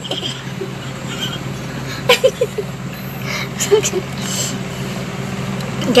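A steady low hum runs throughout, with short bits of a woman's voice, laugh-like, about two seconds in.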